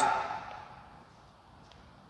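A man's spoken cue ends and rings briefly in the room during the first second. After that there is only quiet room tone.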